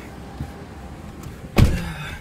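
Someone getting into a car: low shuffling, then a car door shutting with a single heavy thump about one and a half seconds in.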